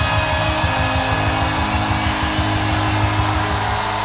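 Live band playing an instrumental passage: drums and cymbals with a fast low pulse under sustained held chords.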